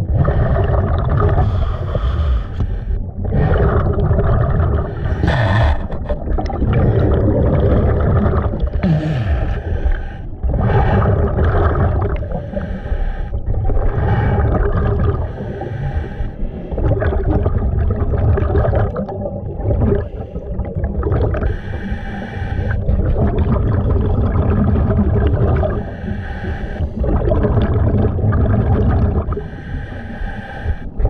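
Scuba diver breathing through a regulator underwater, with bubbling exhales in a slow, even rhythm of roughly one breath every five or six seconds, heard through an underwater camera.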